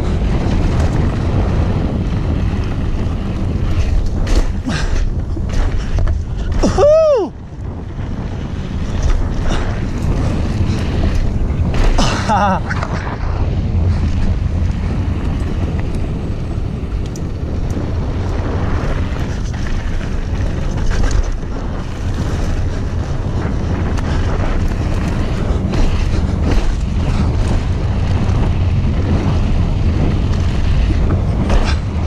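Wind buffeting the microphone of a camera on an enduro mountain bike descending a dirt trail at speed, over the rumble of tyres on gravelly dirt and a constant rattle of knocks from the bike over bumps. A brief pitched sound rises and falls about seven seconds in.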